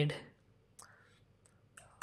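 A few faint, separate keyboard key clicks as digits are typed, in a near-silent room.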